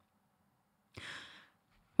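A single short breath close to the microphone about a second in, amid otherwise near silence.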